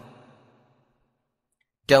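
A pause in a man's speech: his voice fades out within the first half second, then dead silence until he starts speaking again near the end.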